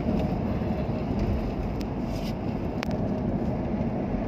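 Steady road and engine noise of a car cruising at about 80 km/h on smooth new asphalt, heard from inside the cabin. A sharp click sounds about three-quarters of the way through.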